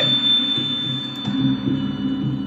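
Online video slot's soundtrack: low, evenly paced bass notes repeating a few times a second, with a high steady tone at the start that fades away over about a second.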